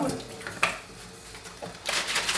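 A plastic canteen partly filled with water being handled at a sink: a sharp knock about half a second in and a lighter one later, then water starting to slosh inside it near the end as it is shaken to rinse it.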